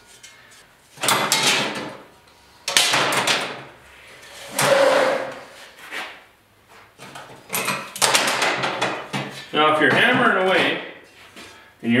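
Steel checker plate being handled and worked against angle iron: three bursts of metal scraping and rattling about a second each, then a quick run of clanks. A man's voice comes in near the end.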